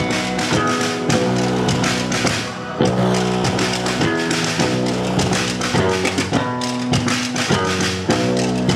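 A rock band playing live: electric guitars with bass over a drum kit, in a steady beat. The loudness dips briefly about a third of the way in, then comes back with a hard hit.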